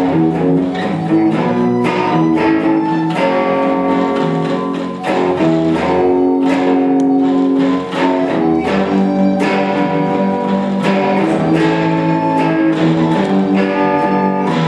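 Live instrumental rock: an electric guitar and a steel-string acoustic guitar play plucked and strummed chords, with a wind instrument holding long melody notes over them.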